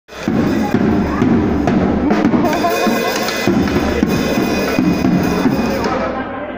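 Acoustic drum kit played loudly by a young boy: a busy, unbroken run of drum and cymbal hits.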